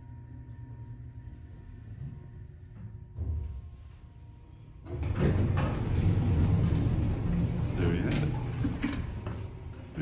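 Dover hydraulic elevator car travelling slowly with a low, steady hum. About halfway through, a much louder rush of noise starts as the car's sliding doors open.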